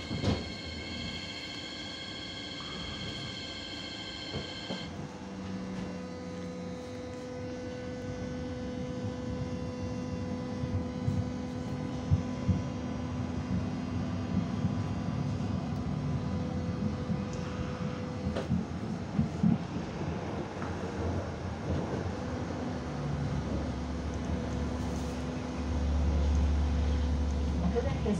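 Inside a Hannover TW6000 tram: a steady whine of several high tones stops about five seconds in. Then the tram runs along the street with a steady electrical hum, wheel-on-rail rolling noise and scattered clicks and knocks. A deeper rumble swells near the end.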